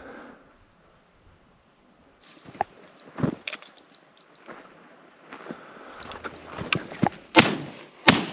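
Brush rustling and crackling underfoot, then two shotgun shots from a double-barrel, the second about three quarters of a second after the first. The first shot is the loudest sound.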